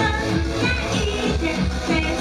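Live idol pop song played loud through a small club's PA: a steady dance beat in the bass with the group's voices singing the melody over it.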